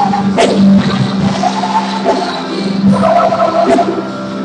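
Live worship band music: keyboards and drums accompanying singers, over a steadily held low note.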